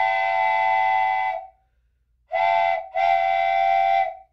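Steam locomotive whistle sound effect, a chord of several steady tones blown in three blasts. The first blast stops about a second and a half in, a short blast follows, then a longer one, each sagging in pitch as it cuts off.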